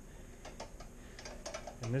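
Light, irregular clicks and taps of a small metal clip and the wire mesh of a crab pot being handled.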